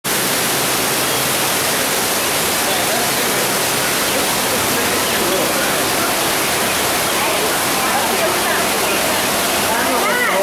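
Steady rushing water of an exhibit waterfall pouring into the tank, with the voices of people nearby faintly mixed in from about halfway through.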